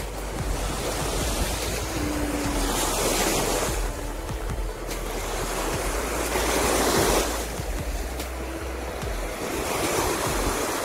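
Small surf breaking and washing up onto a sand beach, the wash swelling loudest about three seconds in and again around six to seven seconds. Wind rumbles on the microphone underneath.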